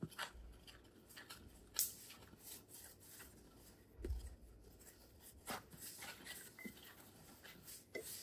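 Faint, irregular scraping and knocking of a Danish dough whisk stirring stiff, shaggy bread dough in a stainless steel bowl, with a few sharper clicks about two, four and five and a half seconds in.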